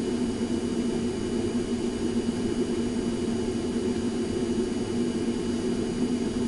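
A steady machine-like hum with a constant low drone and faint steady whine tones, unchanging throughout.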